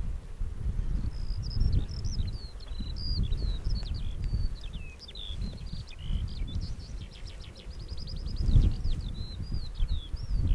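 A songbird singing a long run of varied high, quick notes, with a fast trill of repeated notes past the middle. Underneath is a gusty low rumble of wind on the microphone.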